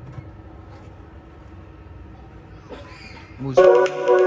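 Faint steady background, then about three and a half seconds in, loud music starts playing through a compact full-range PA speaker with a 25 cm woofer, driven by a 1000 W power amplifier.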